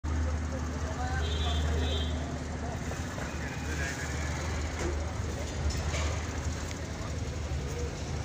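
Busy street noise: a steady low rumble with indistinct voices in the background.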